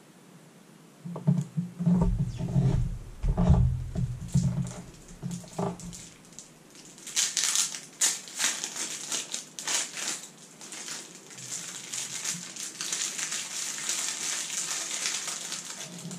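Low thumps and knocks for the first few seconds, then about nine seconds of dense crinkling and ripping from a plastic-wrapped deck of 54 playing cards being worked and torn by hand.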